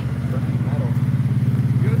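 Side-by-side UTV engine running under throttle with a steady low drone that grows louder, as it is driven to work free of deep mud.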